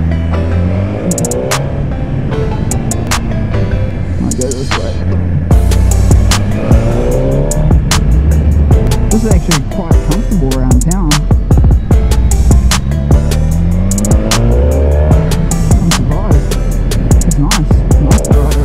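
2017 Suzuki GSX-R1000 motorcycle's inline-four engine pulling through the gears, its pitch rising several times as it accelerates, with music playing over it.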